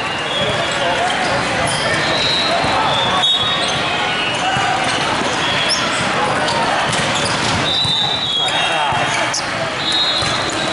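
Busy sports-hall din from many volleyball courts at once: overlapping voices and shouts, volleyballs being struck and bouncing, and short high-pitched squeaks coming and going, all echoing in a large hall.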